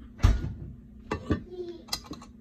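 A few brief knocks and clatters of kitchenware being handled: a sharp one just after the start and two quick ones about a second in.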